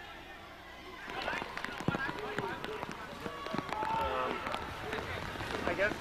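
Game sound from a college football broadcast: faint voices with scattered sharp clicks and knocks, starting about a second in and growing louder toward the end.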